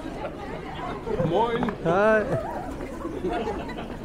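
Chatter of passers-by on a busy street, with a loud startled cry whose pitch rises and falls, from about one to two and a half seconds in.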